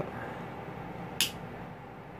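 A single sharp click about a second in: a three-way (single-pole double-throw) wall switch being flipped, switching the lamp on from the second switch location.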